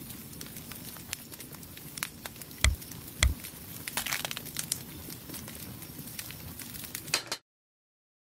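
Crackly food-handling sound with many small clicks, and two heavy knocks a little past the middle as eggs are cracked into a frying pan of noodles. The sound cuts off suddenly about half a second before the end.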